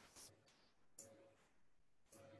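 Near silence: faint room tone, with two faint clicks about a quarter second and a second in.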